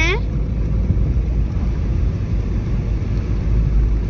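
Car driving along a paved road, heard from inside the cabin: a steady low rumble of engine and tyre noise.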